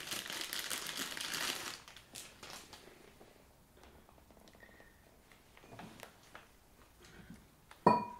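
Clear plastic bag crinkling as it is handled for the first couple of seconds, followed by quiet scattered handling clicks. Just before the end comes a single sharp clink that rings briefly.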